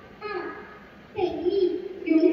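A voice chanting the rhythmic syllables that keep time for Bharatanatyam adavu steps, one drawn-out syllable group about every second.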